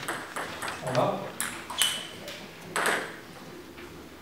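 Table tennis ball rally: the celluloid-type ball ticking sharply off the bats and the table, with a quick run of hits in the first couple of seconds. The hitting stops a little after three seconds in, as the point ends.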